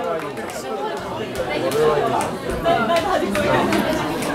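Several people talking at once in a large room: overlapping chatter with no single clear voice.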